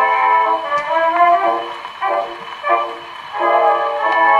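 An old Brunswick phonograph playing an early brass band record. The band's sustained chords thin out to a softer passage in the middle, then come back in full.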